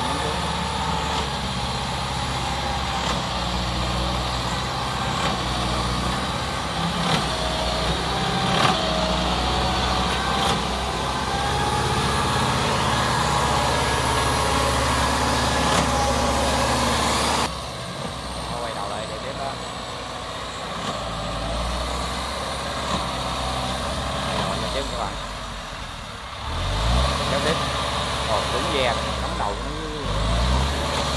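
Engine of a small rice-hauling tractor running steadily as it carries sacks of rice across a wet field. About halfway through the sound cuts to a quieter engine note, and near the end the engine revs up, its pitch rising.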